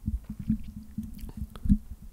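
Irregular soft low thumps, about a dozen over two seconds, with a few faint clicks.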